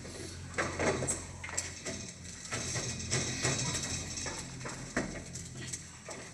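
Irregular knocks and footsteps on a wooden stage, with clicks and rattles of a stage-set door's handle as the door is worked open, over a steady low hum.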